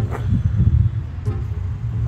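City street traffic noise: a steady low rumble of passing vehicles, with faint distant voices.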